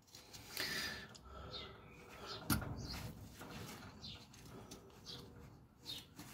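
Knife blade shaving cuts from a green stick: faint scraping strokes of the edge through the wood, with one sharp click about halfway through.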